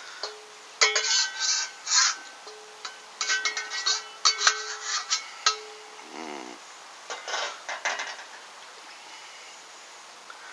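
A spatula knocking and scraping against a metal wok as sausage pieces are scraped out into a frying pan of tomato sauce. The wok rings on after the knocks. It is busy for the first five seconds or so, then softer and more scattered.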